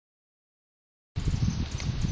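Silence for about the first second, then outdoor background noise with a low rumble, like wind or handling on the microphone.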